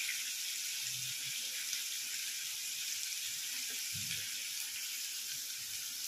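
Boiled potato cubes sizzling steadily in hot oil in a pan on a gas flame.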